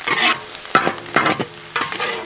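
Metal ladle scraping and stirring sizzling greens in a large wok: about four strokes, roughly half a second apart, with the wok ringing faintly between them. This is the final stir as the dish is finished and dished up.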